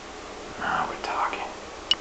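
A man whispering a few words in a breathy voice, then a sharp click near the end.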